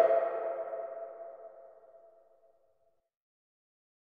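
A single ringing tone with a few overtones, like a struck bell or a synthesiser ping, fading away over about two and a half seconds into silence.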